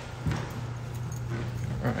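Footsteps on a carpeted hallway floor with a faint jingle of a key ring carried in hand, over a steady low hum.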